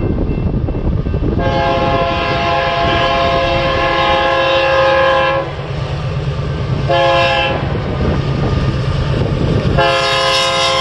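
BNSF freight locomotive sounding its multi-chime air horn as it approaches a grade crossing: one long blast of about four seconds, a short blast, then another long blast starting near the end, the standard crossing signal. The diesel engines' low rumble and the rolling train run underneath.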